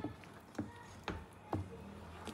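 A spoon stirring thick blended-bean batter in a stainless steel pot, knocking lightly against the pot about every half second, four times.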